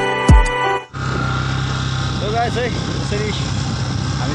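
Background music with deep falling bass drops, cut off suddenly about a second in. It gives way to a motorcycle engine running at a steady pitch while the bike is ridden along the road.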